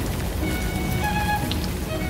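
Steady rain-like hiss with background music of slow, held string notes.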